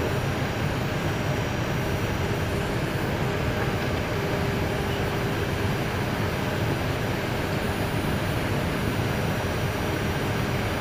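Steady cockpit noise of an Airbus A319 taxiing with its engines at idle: an even rush with a faint steady hum, unchanging throughout.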